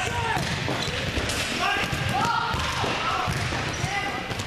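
Volleyballs being hit and bouncing on a gym floor, with people talking in the background.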